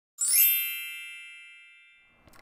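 A bright chime sound effect on an animated logo: one struck ding with several high ringing tones, fading away over about a second and a half.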